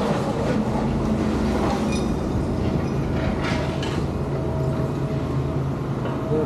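Long-reach demolition excavator at work: its diesel engine runs steadily under load, with a continuous rattling clatter of machinery and rubble.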